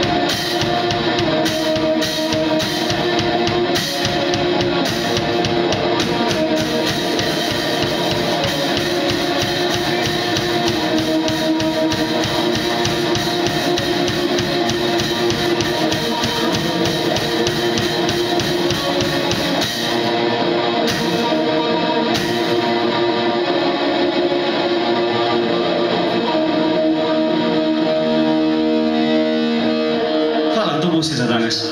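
Live black metal from a guitar-and-drums duo: electric guitar over dense, fast drumming. About two-thirds of the way through the drums stop and the guitar carries on alone.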